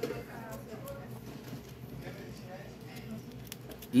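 Faint background voices, with a few light, sharp clicks near the end as a steel nail picks at a metal bottle cap.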